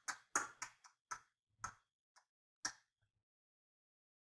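A computer mouse clicking: about eight short, sharp clicks at uneven spacing over the first three seconds.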